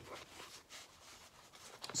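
Faint, irregular rustling and light scratching of cross-stitch materials being handled.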